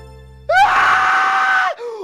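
A man's single long, high-pitched scream of fear at being given an injection, starting about half a second in and held for just over a second, over low background music that fades out.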